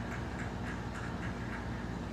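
Ceiling fan running: a steady low hum with a faint, regular ticking of about four ticks a second.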